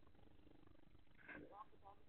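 Near silence: room tone with a low steady hum, and a brief faint voice a little past the middle.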